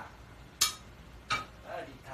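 Two sharp metallic clinks of kitchen utensils against a pan, about three quarters of a second apart, the second ringing briefly.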